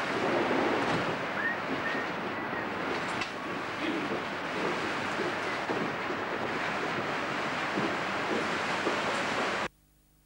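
Steady rushing noise of rain and wind, with scattered soft knocks like footsteps on a wooden walkway. It cuts off suddenly near the end.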